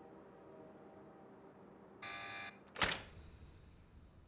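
An electric door buzzer sounds for about half a second, then a single sharp, loud clack from the door.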